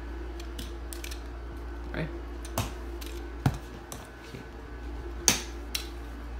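A few sharp knocks and clicks, the loudest near the end, over a steady low hum.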